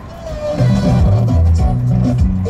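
Music played loud through a Volvo S60's in-car sound system, with deep bass notes, coming up about half a second in.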